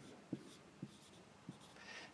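Dry-erase marker writing on a whiteboard, faint, with four short stroke sounds standing out.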